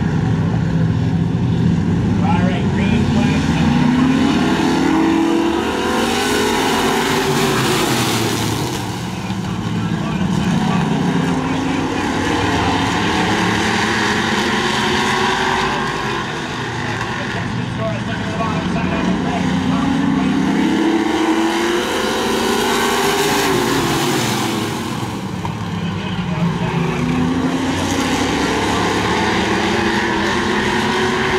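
A pack of street stock race cars running around a short oval track, their engines' pitch rising and falling several times as the group comes around.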